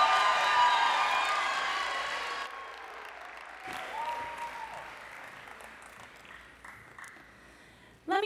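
Audience applauding, loud at first and dying away over about three seconds into scattered claps.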